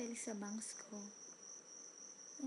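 A steady high-pitched whine, with a young woman's voice heard briefly in the first second.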